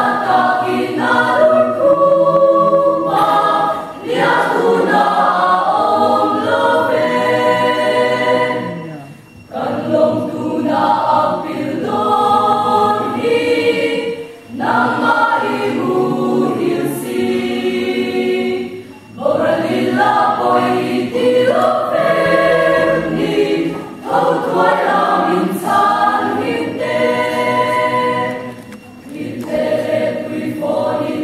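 Mixed choir of young men and women singing a Mizo hymn together, in phrases broken by short pauses for breath about every five seconds.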